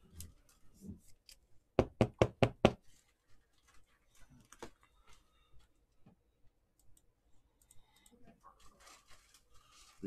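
Five quick, sharp knocks on a tabletop, about four a second, as a card in a rigid plastic top loader is tapped down; then faint clicks and rustles of trading cards and plastic holders being handled.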